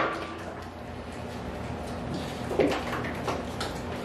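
Faint taps and clicks of people eating at a table, with food and bottles being handled, over a low steady hum. A few of the taps come in the second half.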